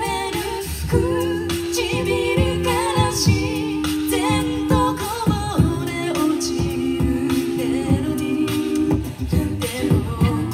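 A cappella vocal group singing live through microphones: a lead voice carries a wavering melody over held backing harmonies, with vocal percussion keeping a steady beat.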